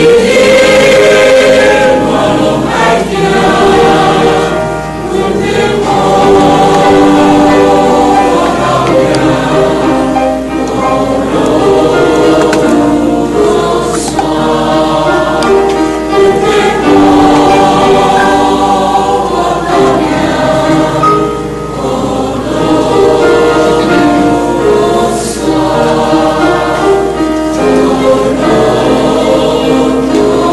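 A mixed church choir of men and women singing a hymn in Taiwanese, with held notes that run on without a break.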